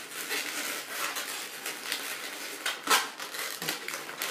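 Inflated latex twisting balloons being squeezed and rubbed against one another, giving scattered squeaks and rubbing noises, the sharpest a little under three seconds in.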